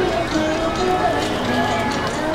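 Ballpark crowd chattering, many voices overlapping at once, with faint music underneath and a few sharp claps or knocks.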